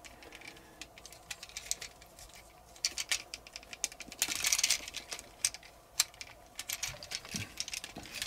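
Hard plastic parts of a Transformers action figure clicking and rattling as they are turned and tabbed into place by hand: scattered small clicks, a short scraping rustle about four seconds in, and a louder click about six seconds in.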